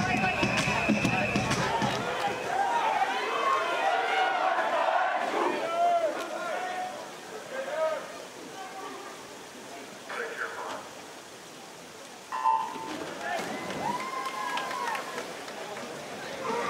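Spectators' voices and cheering at a swimming meet die down to a hush. About twelve seconds in the electronic start signal sounds, and the crowd cheers as the swimmers dive in.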